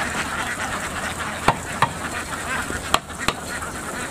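A large flock of laying ducks quacking all together as they crowd down a wire-mesh ramp off a duck transport boat. A few sharp knocks cut through the calls, twice near the middle and twice near the end.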